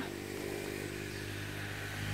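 A steady low engine hum, a motor running at an even speed with no rise or fall.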